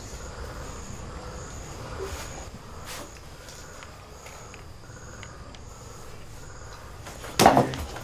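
Crickets chirping in the background, short high chirps recurring every half second or so over a low room hum. About seven seconds in comes a single short, loud knock.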